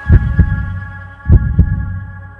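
Heartbeat sound effect: deep double thumps, lub-dub, repeating about every 1.2 seconds over a faint sustained hum that fades away.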